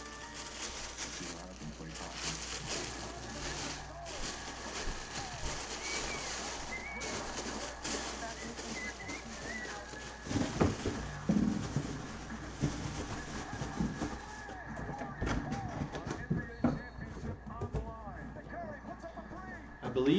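Plastic bag crinkling and rustling as a football helmet is handled and unwrapped, then a few knocks about halfway through as things are set down and a cardboard box is handled.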